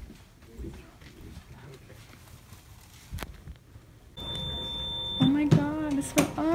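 Quiet indoor room tone with light camera handling and a single click about three seconds in. About four seconds in, the background steps up with a steady high whine, and near the end a person's voice gives a short drawn-out vocal sound.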